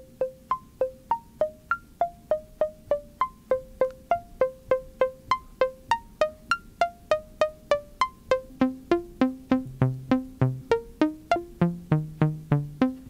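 Mutable Instruments Plaits synthesizer module on its green model 2, the waveshaping oscillator, playing a sequenced run of short, quickly decaying 'muted strings' plucks, about three notes a second on stepping pitches. About two-thirds of the way through, a knob turn brings in lower notes.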